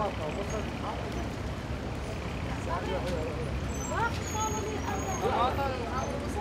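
Busy street ambience: several voices talking indistinctly over a steady low rumble of traffic.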